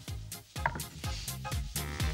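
Upbeat electronic background music with a steady beat, about four strikes a second, over a bass line.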